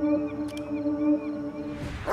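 Background music: sustained synth notes held over a small repeating high figure, with a rising noise swell near the end.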